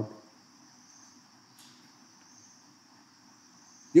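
Faint, steady high-pitched chirring of insects from the surrounding forest, with a low hum beneath and one soft click about a second and a half in.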